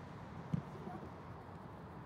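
A football being kicked: one short, dull thud about half a second in, over faint steady hall ambience.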